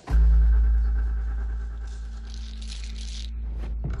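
Trailer sound design: a deep bass boom hits just after the start and fades slowly under a low held drone. A hissing swell rises in the middle, and a quick whoosh comes just before the end.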